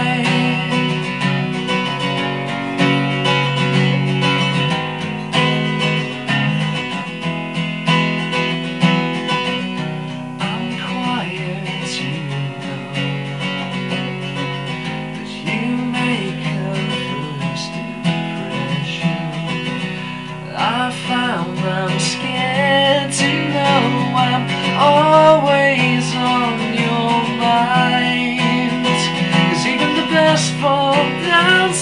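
Solo acoustic guitar strummed steadily through a chord progression, with a man's singing voice over it that comes up strongest in the last third.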